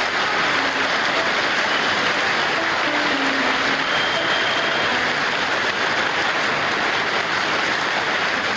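Large concert audience applauding steadily, a dense, even clapping that follows a sung passage.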